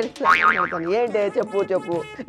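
A comic, cartoon-style 'boing' sound effect with a wobbling, gliding pitch, laid over a man's exaggerated crying.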